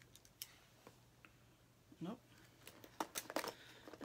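Light clicks and faint plastic rustling of small plastic pacifiers being handled and a clear vinyl zip pouch being rummaged through, with a cluster of clicks about three seconds in.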